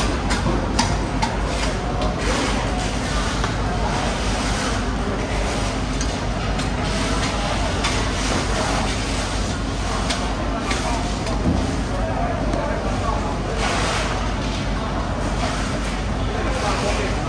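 Indistinct voices talking in the background over a steady low hum, with scattered clicks and knocks.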